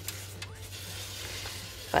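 Steady background hiss with a low hum underneath and a faint click or two in the first half second.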